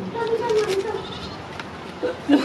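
Onion being rubbed on a flat steel grater, its scraping strokes faint under a drawn-out, wavering call in the first second that is the loudest sound.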